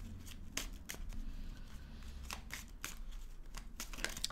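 A tarot deck being handled and shuffled in the hands, with a handful of soft separate card clicks.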